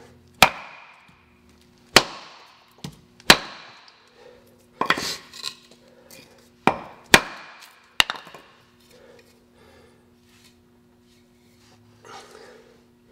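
A wooden block knocking down on the end of a hatchet's new wooden handle, with the head resting on a board, to drive the handle into the eye and seat the head. About ten sharp knocks come at irregular intervals over the first eight seconds.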